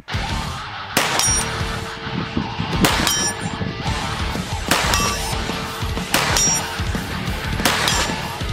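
Sharp shots about every one and a half to two seconds, five or so in all: a 9mm CZ Scorpion EVO S1 pistol fired slowly at a 50-yard target. Rock music plays under them.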